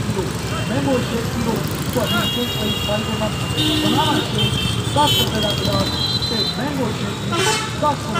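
Street traffic with vehicle horns beeping on and off, several of them overlapping through the middle and another near the end, over the steady hum of passing engines and a crowd's voices.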